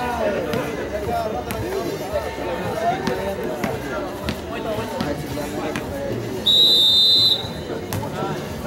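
Spectators talking and calling out around the court, then a referee's whistle blown once, a short shrill blast of under a second near the end.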